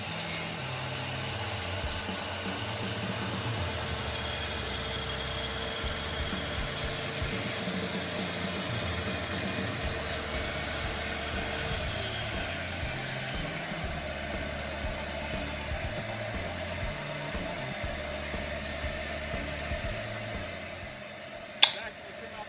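Makita plunge track saw running and cutting slowly through a board along its guide rail, a high-pitched whine over a steady motor tone. About two-thirds of the way in the high whine stops and a lower steady hum carries on, slowly fading. A sharp knock comes just before the end.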